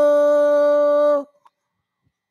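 A man's voice calling the adhan, holding one long steady note that breaks off a little over a second in.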